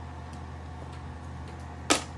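A single sharp click of a mahjong tile being set down on the table near the end, over a steady low hum.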